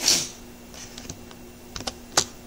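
Computer keyboard keystrokes: a short loud rush of noise right at the start, then a few quick key clicks near the end.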